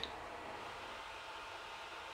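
Faint steady hiss of room tone, with no distinct sound event.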